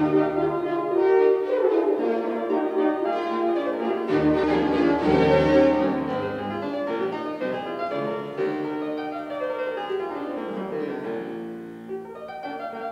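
Fortepiano and string orchestra playing a classical-era concerto together, with quick sweeping runs. The music softens near the end.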